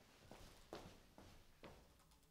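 Faint footsteps marching in place, four steps about half a second apart.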